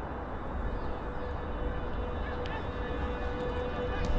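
Steady outdoor background noise with a low rumble underneath and a faint steady hum.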